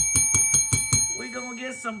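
Bell rapidly ringing, about seven strikes a second, as a win-celebration sound effect; it fades out a little over a second in. A man's voice starts near the end.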